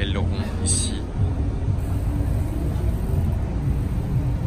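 Outdoor street noise: a steady low rumble, with a short hiss a little under a second in.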